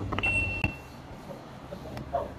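Li Xiang One's power tailgate giving one steady, high electronic beep about half a second long as its button on the underside of the tailgate is pressed, with a few soft clicks around it.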